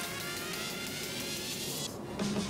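Background electronic music with a steady pulse and a synth sweep rising steadily in pitch.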